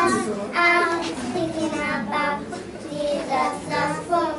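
A group of young girls singing a song together, their voices held on drawn-out notes.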